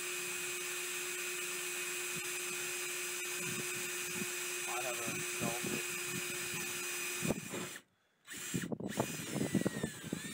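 Cordless drill running steadily as it bores a pilot hole with a small bit through the metal roof of a shipping container. The steady whine stops about seven seconds in.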